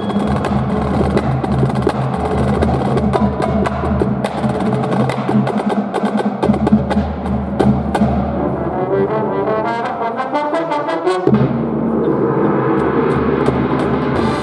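A drum corps brass line and percussion section playing: dense drum strokes over sustained brass chords. About eight seconds in the low brass drops away while a rising percussion run builds, and the full band comes back in about eleven seconds in.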